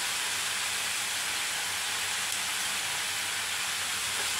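Diced potatoes and onions frying in oil in a pan: a steady, even sizzle.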